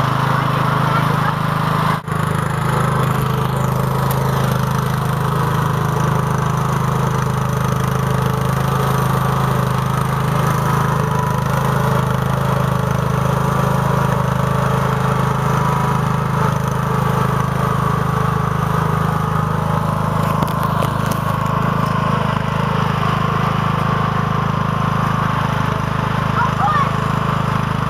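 Lawn tractor's engine running steadily at an even speed, with a brief break in the sound about two seconds in.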